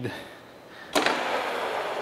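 Carlton radial drill switched on about a second in: a click, then the spindle running steadily, set to 1425 rpm, with a drill bit that is not seated well in the chuck.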